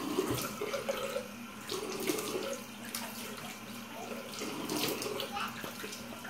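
Water running from a tap into a sink, with hands splashing it onto the face to rinse off a face mask.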